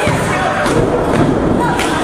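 Crowd noise from spectators, with a few sharp smacks and thuds from wrestlers striking each other and landing on the ring mat.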